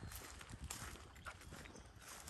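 Faint background noise with a few soft, scattered ticks and clicks.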